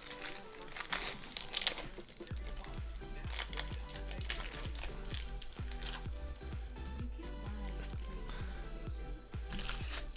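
Plastic wrapper of a Panini Contenders basketball card pack crinkling and tearing as it is ripped open by hand, with quiet background music whose steady beat comes in about two seconds in.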